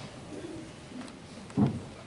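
Congregation sitting down in pews: faint rustling and shuffling, with one short low bump about one and a half seconds in.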